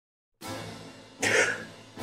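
A man coughs once, briefly, over a faint steady low hum that starts about half a second in.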